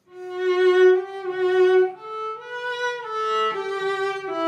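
Klaus Heffler #3 German cello played with the bow in its upper register. A slow phrase enters from silence at the start with a long held note, then steps up and back down through several sustained notes.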